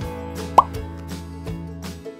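Light background music with one short, loud 'plop' sound effect about half a second in, its pitch sweeping quickly upward like a cartoon bloop.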